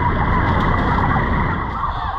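A large flock of turkeys in a poultry house calling all at once: a dense, steady din of many overlapping short calls, with a steady low rumble underneath.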